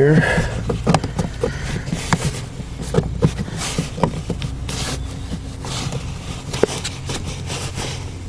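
A 3D-printed plastic vent deflector being pushed and worked onto a floor air duct, giving irregular clicks, knocks and scraping as plastic rubs on plastic and carpet, over a low steady hum.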